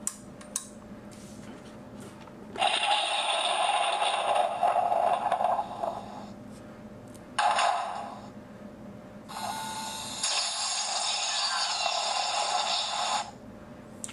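Electronic sound effects from a toy display box's small built-in speaker, playing with its light show: three bursts of thin, hissing noise with no bass. The first starts about three seconds in and lasts some three seconds, a short one comes near the middle, and a longer one runs from about nine seconds in. A click comes just before the first.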